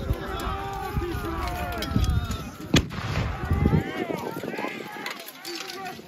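Mock medieval melee: shouting voices of re-enactors and the clatter of pole weapons and armour, with one sharp crack about three seconds in.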